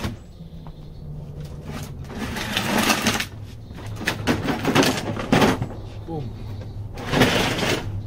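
Hand tools and metal parts rattling and clinking in three bursts of about a second each as the tiller is taken apart, over a low steady hum.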